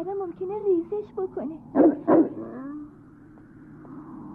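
A dog whimpering in short rising-and-falling whines, then barking twice, loudly, about two seconds in, the barks half a second apart.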